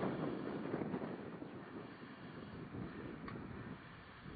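Wind rumbling and buffeting on the camcorder's microphone, strongest in the first second and easing off toward the end. A faint click about three seconds in.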